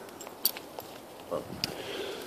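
Quiet outdoor ambience with a few faint, sharp clicks and a softly spoken word.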